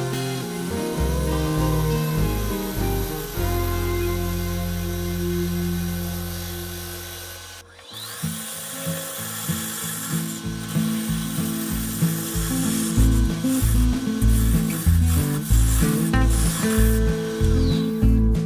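Bowl gouge cutting a spinning green sweet gum blank on a wood lathe, heard under background music. The sound dips sharply about eight seconds in, then picks up again.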